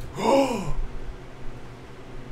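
A man's short breathy sigh, voiced and falling in pitch, lasting about half a second near the start.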